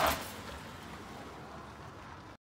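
A car pulling away: its engine and tyre noise drops off quickly in the first moments, then a steady faint hiss remains.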